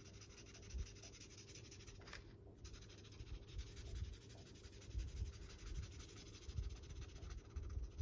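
A felt-tip marker colouring in on a paper sheet: faint scratching, with a few soft bumps.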